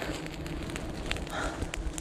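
Smouldering smoke torch crackling with many small, irregular snaps over a faint steady low hum.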